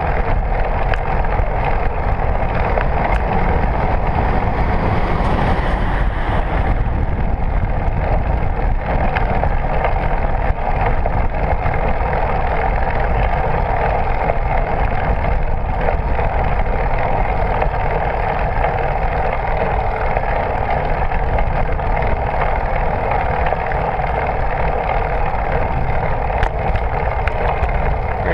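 Steady wind rush and road rumble on a moving bicycle, heard through a handlebar-mounted GoPro Hero 3 in its housing.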